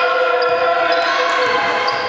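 Sound of a basketball game in a sports hall: a basketball bouncing on the wooden court. Under it, a steady held tone fades out about a second and a half in.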